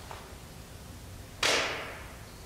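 A single sharp knock about one and a half seconds in, dying away in the church's echo over about half a second.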